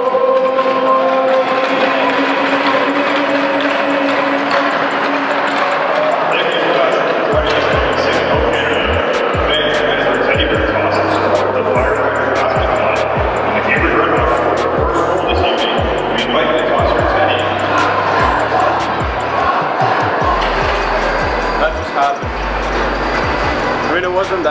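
A sung note held for the first few seconds, then an arena crowd cheering and applauding. From about seven seconds in, irregular low thumps and knocks come through under the crowd.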